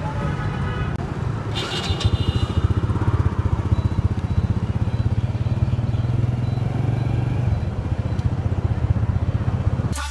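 A motor vehicle engine running steadily close by in street traffic, a low hum with a fast, even pulse, with a brief higher tone about two seconds in.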